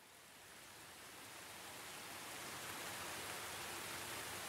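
A faint, even hiss fading in gradually from silence: a noise layer laid under the intro of a produced song, just before the guitar comes in.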